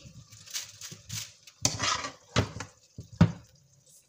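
Metal serving spoon scraping and knocking in a nonstick frying pan as thick, saucy chicken is scooped out: about five separate scrapes and knocks, the sharpest a little after three seconds in.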